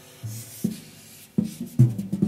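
Improvised drum-kit playing: a few low drum strokes spaced apart, then a quicker cluster of hits near the end.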